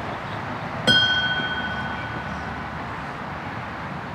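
A bell struck once about a second in, its clear ring fading away over about two seconds, marking a name just read in a roll of the dead.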